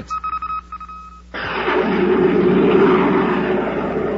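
A high beeping electronic tone pulses briefly, then breaks off. A loud rushing roar bursts in, swells and holds: a rocket-blast sound effect from a 1950s radio drama.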